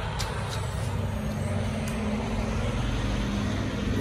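Street traffic dominated by a tractor-trailer's diesel engine running as the truck moves along the road: a steady low rumble, with a steady engine hum coming in about a second in.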